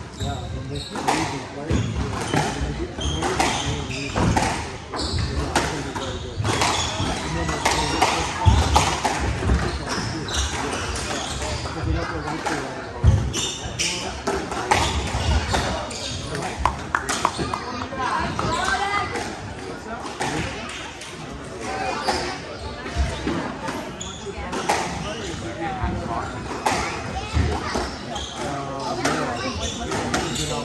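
Squash ball struck by rackets and hitting the court walls in a rally: a string of sharp, irregular knocks, over the steady chatter of spectators.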